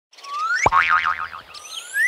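Cartoon sound effect: a rising glide, then a boing about two-thirds of a second in with a wobbling pitch after it, and another rising glide near the end.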